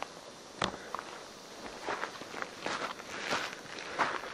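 Footsteps on dry, grassy dirt ground: irregular scuffs and crunches with a few sharper clicks.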